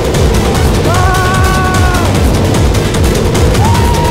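Steel roller coaster train running along the track: steady wind rush on the on-board microphone with a rapid, dense rattle of the wheels. Over it come a few held pitched tones, each about a second long.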